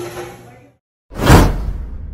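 Restaurant room noise fades out, then about a second in comes a loud whoosh transition sound effect that tails off into a low rumble.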